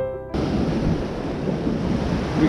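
Piano music cuts off abruptly just after the start, giving way to the steady rush of a fast-flowing river, with wind buffeting the microphone.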